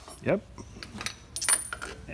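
A few light metallic clinks and taps from metal brake parts and hand tools being handled, one of them with a short high ring.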